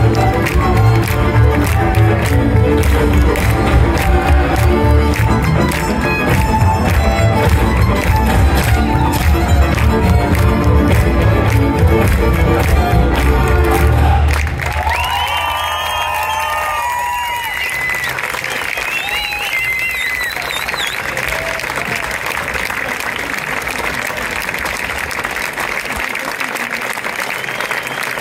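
A live Slovak folk band playing dance music with a heavy bass beat, which ends about halfway through. An audience then applauds and cheers, with a few shouts near the start of the applause.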